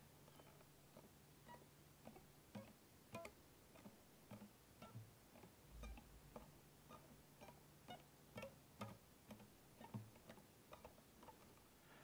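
Near silence broken by faint, irregular taps and soft, brief string notes from fretting-hand fingers lifting off and pressing back onto the strings of an acoustic guitar, with no picking.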